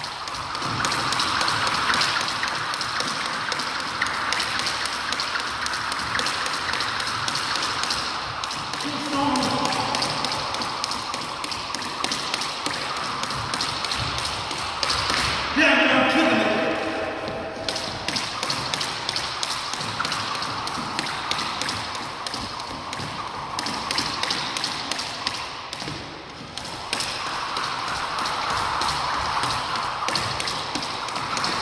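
Jump rope slapping a hardwood floor and shoes landing, a steady run of light taps, jump after jump. A voice is heard briefly twice, loudest about halfway through.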